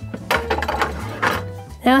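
A glass air-fryer basket with a wire rack being slid into an air fryer, giving a run of clinks, knocks and scrapes. Background music plays underneath.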